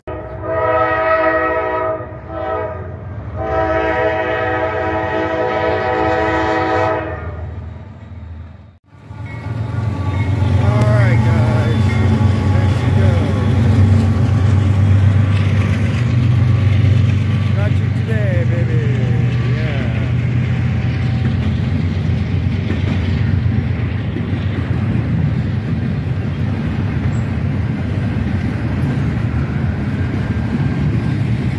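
Norfolk Southern freight train sounding its horn, a short blast and then a longer one of about four seconds. After a momentary dropout, the diesel locomotives pass with a loud low engine rumble, followed by the steady rolling noise of the double-stack container cars.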